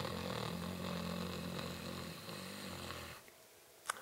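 A person drawing a long, deep inhalation through a constricted throat, the low snoring sound of the pranayama inhale in Bhramari. It holds steady and stops about three seconds in as the breath is retained. A short click comes just before the end.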